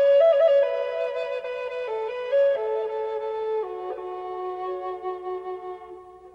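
Background music: a slow flute melody of held notes stepping between pitches, dying away near the end.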